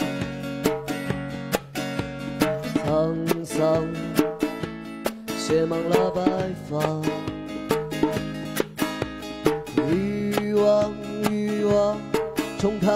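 A live acoustic song: a steel-string acoustic guitar strummed with a djembe hand drum keeping the beat, and a man's voice singing at times.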